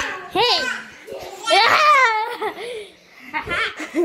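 Young children's voices laughing and exclaiming in three high-pitched bursts, with no clear words.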